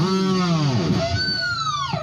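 Cort X-series electric guitar played solo: sustained notes whose pitch bends and slides downward, and in the last second one high note glides steadily down.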